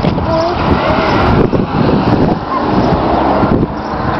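Wind buffeting the camera's microphone: a loud, uneven, gusty rumble.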